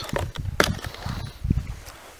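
Footsteps in snow mixed with handling knocks as a person walks up to the camera and picks it up. The thumps are irregular, with a couple of sharper knocks.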